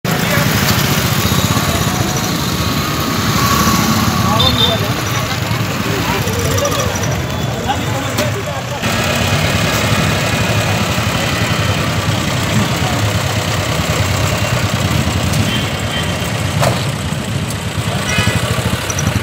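Motorcycle engines running amid busy street noise and indistinct voices of a crowd.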